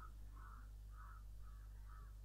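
Faint repeated animal calls, about two a second, over a steady low hum.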